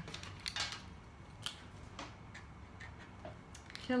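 Light, scattered clicks and taps of Giotto felt-tip markers being handled: caps pulled off and snapped on, and pens knocking together as they are picked from the pile on the table.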